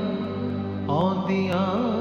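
Music: a slow, sad-sounding song with a sung vocal line over a sustained drone. The voice comes back in about a second in with a wavering, ornamented melody.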